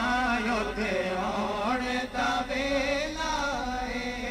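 Male naat singers chanting a Punjabi naat with no instruments, a lead voice drawing out long ornamented notes that waver and glide between pitches.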